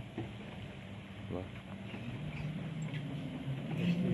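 Distant patrol boat's engines running at speed, a steady low drone carried across the water, with faint voices behind it.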